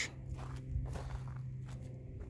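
Soft footsteps on a damp sandy mud flat, several quiet steps, over a low steady hum.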